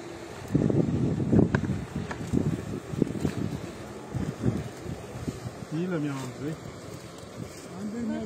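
Indistinct men's voices talking, with wind buffeting the microphone; a single voice stands out about six seconds in.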